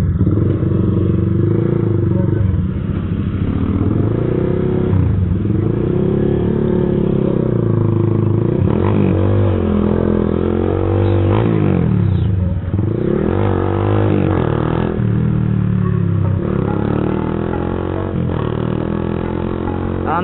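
Z200X motorcycle engine heard close up from the bike: running steadily at first, then pulling away and revving, its pitch climbing and dropping several times in the middle as it shifts through the gears.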